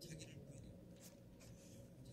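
Near silence: low room hum with a few faint clicks.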